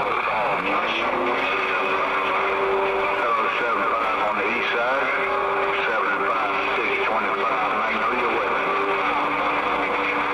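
CB radio receiving distant stations during a skip opening: garbled, overlapping voices over steady hiss, with steady whistle tones coming and going as carriers clash.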